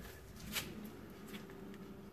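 Hand-spun brake drum on a 1959 Cadillac DeVille, turning freely on its hub after a wheel-cylinder rebuild and new shoes. It gives a faint, light rub with a few soft ticks: the shoes are adjusted to be just barely touching the drum.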